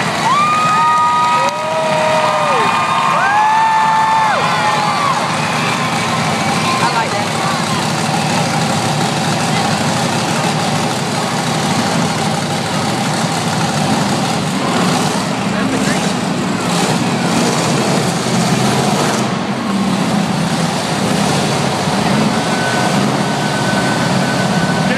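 Monster truck engine running and revving in an arena, under steady crowd noise. In the first few seconds a few long held tones, gliding at their ends, sound over it.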